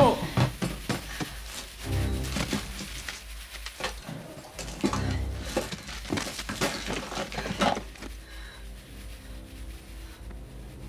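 Film soundtrack: tense music under a busy run of knocks, clicks and scuffling, with two heavier low thuds about two and five seconds in, thinning out over the last couple of seconds.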